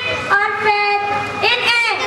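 A girl singing, holding long steady notes with short breaks and glides between them.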